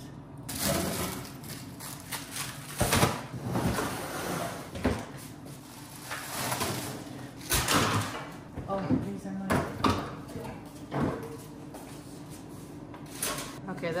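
Items being cleared out of a refrigerator's freezer: plastic packs and bags rustling and crinkling as they are handled and dropped into a plastic-lined trash can, with several sharp knocks of things against the shelves and bin.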